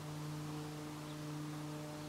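A steady low hum with a few fainter overtones, holding level throughout.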